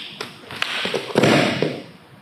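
Grapplers' feet and bodies on a foam gym mat as one man is snapped down onto his hands and knees. There are a few light taps, then a louder scuffing noise just past halfway through, lasting about half a second.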